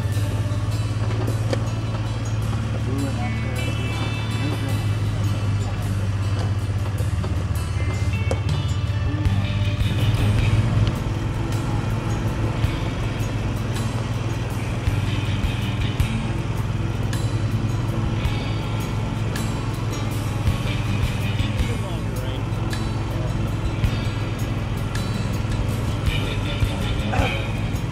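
Vehicle engine running steadily as an open-sided hunting rig drives slowly over rough ground: a constant low hum with light rattles and clicks over it.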